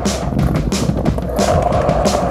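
Skateboard wheels rolling on concrete with a steady rumble, over background music with a regular beat.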